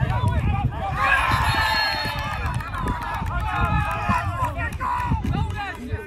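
Several people shouting at once during a live play, with long drawn-out yells that overlap for a few seconds before fading near the end, over a low rumble.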